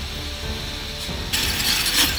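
Metal rollers of a roller slide rattling and clicking as a rider rolls down over them. About a second and a half in, it gives way suddenly to a louder, brighter clatter of rollers spinning.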